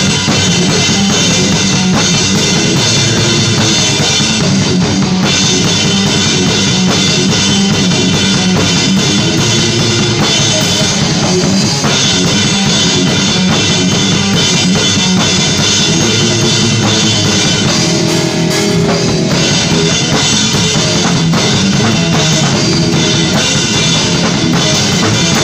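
Drum kit played through a death metal song, with dense, rapid kick-drum, snare and cymbal strokes that run without a break, alongside the rest of the song's music.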